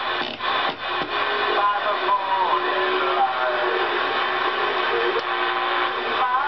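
Music with a singing voice received over the air on a Cobra 2000GTL CB radio and played through its speaker, over a steady hiss.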